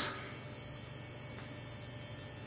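Low, steady electrical hum with a faint hiss underneath: the recording's room tone.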